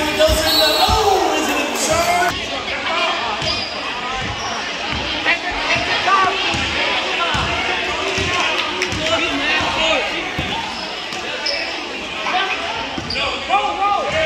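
A basketball being dribbled and bouncing on a hardwood gym floor, a string of short irregular thuds during play.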